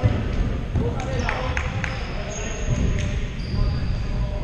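Futsal being played in a sports hall with a wooden floor: the ball knocking off feet and the floor, the loudest knock right at the start, then several more through the middle. There are short high squeaks, likely sneakers on the court, and distant players' shouts, all with hall echo.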